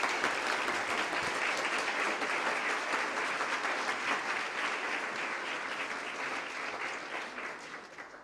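Audience applauding: many hands clapping, holding steady and then dying away near the end.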